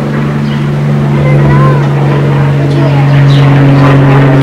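A loud, steady low mechanical hum at a constant pitch, like a motor or engine running. A second, higher steady tone joins about two and a half seconds in.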